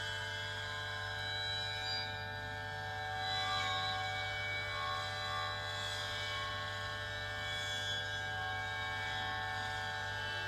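Experimental electroacoustic drone from guitar, live electronics and prepared drums: many steady, overlapping high tones layered over a constant low hum, shifting slowly and swelling slightly at times, with no beat.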